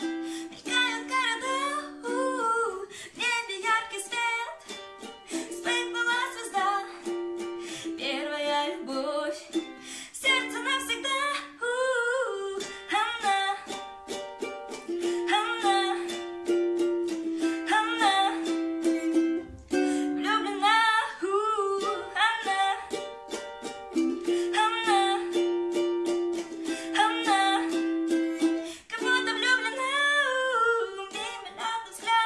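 A girl singing a song while strumming her ukulele in a steady rhythm.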